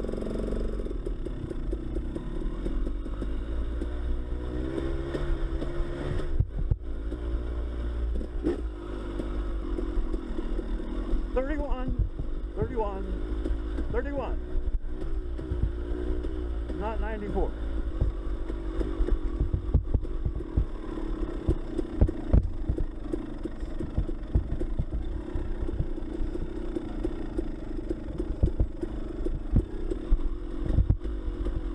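Dirt bike engine running on a descending dirt trail, its pitch rising and falling with the throttle, with scattered short knocks from the bike over the rough ground.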